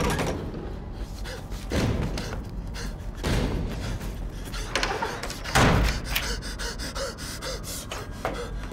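Aggressive banging on a door, like two hands slamming against it: three loud thuds a couple of seconds apart, with a man's gasping breaths between them.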